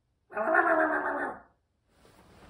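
A single drawn-out vocal sound with a steady pitch, loud and lasting about a second.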